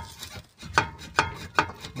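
Volvo XC70 front suspension knocking in an even rhythm, about two or three knocks a second, as the wheel is shaken by hand: the sign of play in a worn lower ball joint.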